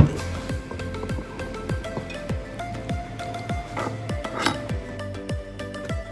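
Background music with a steady beat of falling bass-drum hits. A metal spoon stirring marinating pork in a plastic tub adds a few faint clinks and scrapes, most clearly around four seconds in.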